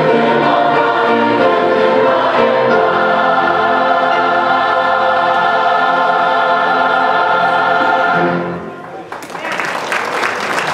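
A large mixed church choir singing the end of a gospel song, holding a long final chord that cuts off about eight seconds in. Applause breaks out about a second later.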